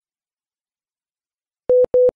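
Dead silence, then near the end two short electronic beeps of the same steady mid-pitched tone in quick succession.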